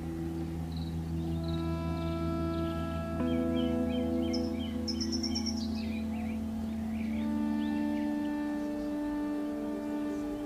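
Background music of slow, held chords that shift about three seconds in and again near seven seconds, with birds chirping over it through the middle.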